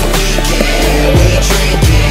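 Hip-hop backing track with a deep sustained bass line and a kick drum hitting about three times; no rapping in this stretch.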